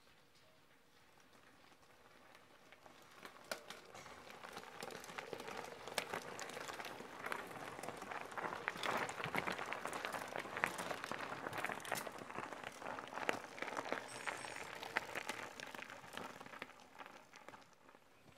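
Mountain bikes riding past on a dirt and gravel trail: tyres crunching over stones with rattling and clicking from the bikes. The sound grows louder as the riders approach, is loudest as they pass close, and fades away near the end.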